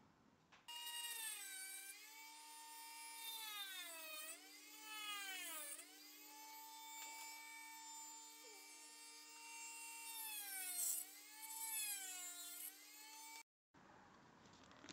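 Faint electronic synthesizer tones: a steady low drone under a stack of higher tones whose pitch glides down and back up several times, then stops abruptly near the end.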